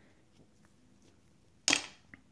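A single sharp slap near the end as a paper scratch-off lottery ticket is laid down onto a granite countertop, dying away quickly; otherwise quiet room tone.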